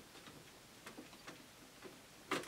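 Near silence with a few faint, light clicks: fingers working a small body latch on an RC truck.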